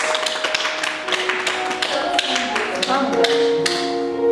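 Soft background music with long held notes, under scattered sharp claps from a small group applauding the end of a speech; the clapping dies away shortly before the end.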